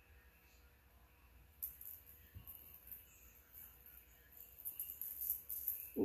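Beaded chain bracelet jingling and clinking as it is handled. A sharp clink comes about a second and a half in, then small irregular jingles follow.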